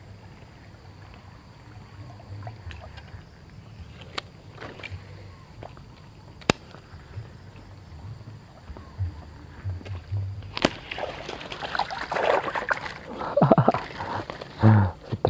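A snakehead strikes a surface frog lure about ten and a half seconds in: a couple of seconds of loud water splashing and thrashing. Before it, only a faint low rumble and two sharp clicks; a man's voice comes in at the very end.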